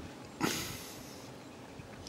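A single short sniff, a quick breath through the nose, about half a second in, over a faint steady background hiss.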